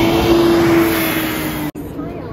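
Double-decker bus driving past on a city street: engine running with a steady tone that sinks slightly in pitch, over traffic noise. The sound cuts off sharply near the end and gives way to quieter street noise.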